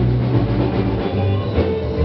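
Live band playing an amplified rock number: a bass line moving under drums and guitar.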